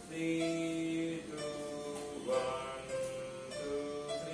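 Casio electronic keyboard playing a slow line of held notes and chords in a plucked, guitar-like voice, changing about once or twice a second.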